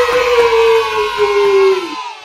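A woman's long, excited cheering squeal, one held note whose pitch slowly sinks, stopping near the end.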